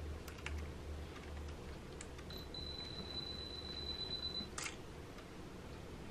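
Faint soft scrapes and ticks of a plastic spatula spreading glue on the underside of a guitar bridge. Near the middle, a thin steady high whine lasts about two seconds and ends in a short click.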